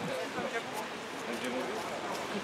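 Faint, indistinct voices of people talking quietly among themselves, over steady outdoor background noise.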